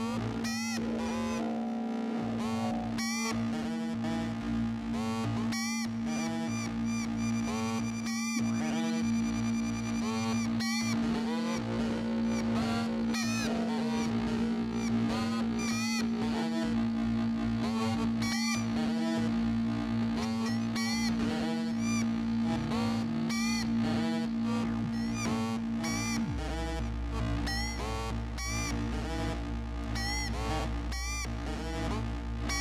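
Eurorack modular synthesizer playing: a held drone note under a stream of short plucked notes run through the Clatters EXP-FX pitch-shifting delay on Sibilla, giving glitchy repeats that slide in pitch. About 26 seconds in, the held note drops to a lower bass note.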